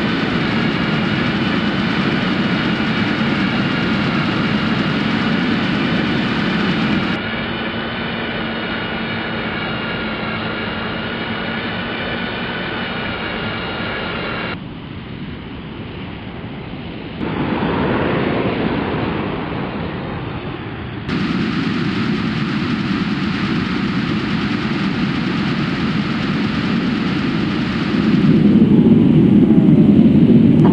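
Jet-like engine sound effect for an animated spaceship in flight: a steady rushing drone, with a high whine over it for the first half. It switches abruptly several times, swells briefly around the middle and grows louder near the end.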